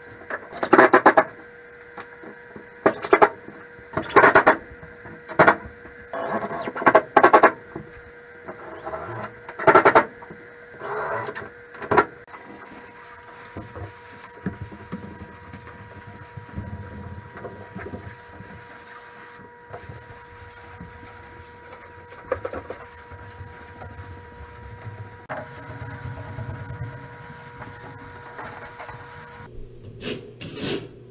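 Drywall patching work: a run of loud, irregular knocks and scrapes for the first twelve seconds or so, then a quieter steady hiss with a faint constant hum.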